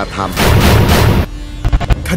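A loud boom-like sound effect: a noisy burst lasting about a second, followed by a faint low steady tone and a few low thumps near the end.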